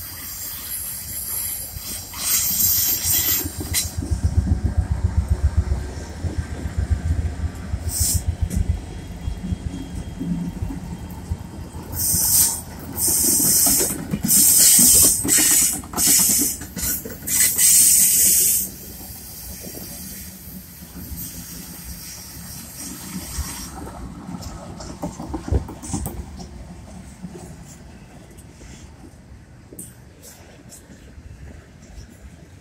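Freight train passing close at speed behind a GE AC44C6M lead locomotive and a string of trailing diesel units. The locomotive engines make a throbbing rumble about four to eight seconds in, then steady wheel and rail noise follows. Loud bursts of hiss come and go near the start and again from about twelve to eighteen seconds in.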